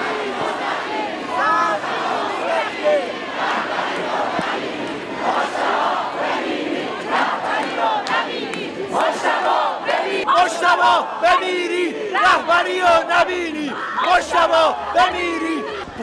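Crowd of protesters shouting together, many voices overlapping, with a run of rhythmic, evenly spaced loud shouts in the second half.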